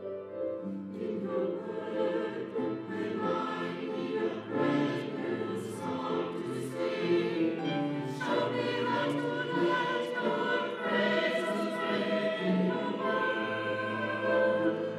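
A mixed-voice church choir singing an anthem, accompanied by piano.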